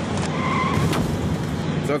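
Road traffic noise from a street collision scene, with a short high squeal of car tyres about half a second in.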